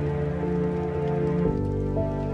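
Slow, melancholic piano music over a steady sound of falling rain. About one and a half seconds in, the chord changes and a deeper bass note comes in.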